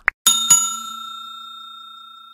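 Two quick clicks, then a small bell struck twice in quick succession, ringing on and slowly fading: the notification-bell sound effect of a subscribe-button animation.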